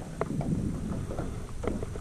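Wind rumbling on the microphone over low, steady water and boat noise from a small boat on the water, with a few faint clicks.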